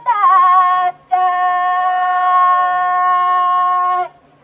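Kiyari, the traditional Japanese festival work chant, sung by a single voice: it slides down with a quaver into a high note, pauses for a breath about a second in, then holds one long steady note.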